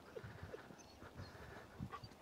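Faint sounds of a leashed dog walking on a paved road beside its handler: a few soft, irregular taps in an otherwise quiet outdoor hush.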